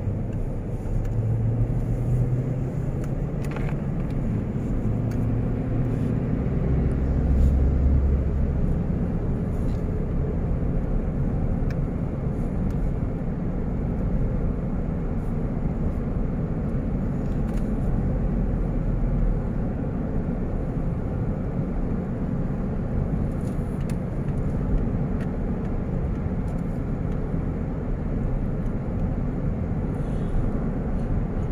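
Steady engine and tyre rumble heard from inside the cabin of a car cruising along a highway. A low hum swells briefly about seven seconds in.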